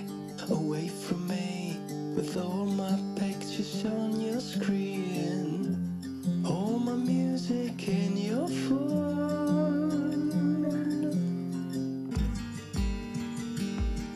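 A song playing: fingerpicked acoustic guitar and a man singing over held bass notes, with low drum beats coming in near the end.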